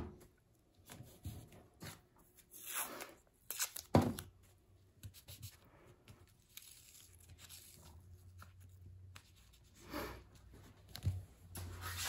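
Blue painter's tape torn off the roll in short pieces and pressed onto a plastic mylar stencil: a few brief rips and rustles spread through a quiet stretch.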